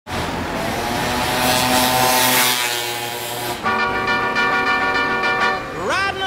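Vehicle sounds starting abruptly: a noisy stretch with a slowly sinking tone, then a steady horn toot of about two seconds, ending in a quick rising slide.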